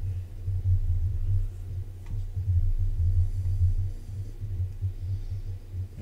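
Low, uneven rumbling hum with a faint click about two seconds in.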